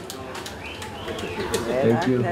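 A lull in live band music: soft voices talking in a small bar, with a few light clicks and knocks.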